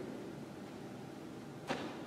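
A pause in speech: faint room tone, with one short sharp click near the end.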